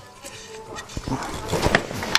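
Small toy pieces being handled, with a few light clicks and knocks bunched in the second half over soft rustling.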